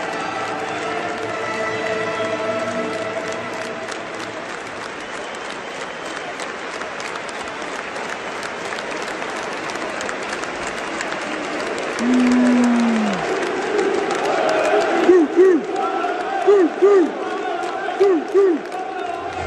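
Large football stadium crowd applauding and cheering, with stadium PA music fading out in the first few seconds. About twelve seconds in, a loud held call nearby falls away in pitch. In the last few seconds, fans close by shout in short, repeated rhythmic calls.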